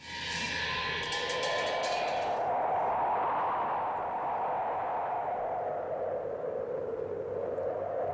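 Opening of a documentary film's soundtrack: a wind-like whooshing drone that starts suddenly and slowly wavers up and down in pitch, with a brief high shimmer over its first two seconds.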